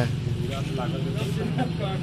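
A steady, low engine hum, typical of a vehicle idling, under faint voices of people talking.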